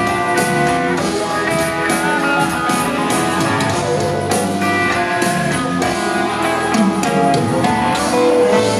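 Live rock band playing an instrumental stretch: electric guitars over bass and drums, with a steady beat.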